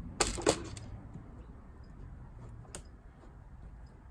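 Sharp snaps of a kWeld spot welder firing through nickel strip onto an 18650 cell: two or three in quick succession just after the start, then a single click about three seconds in.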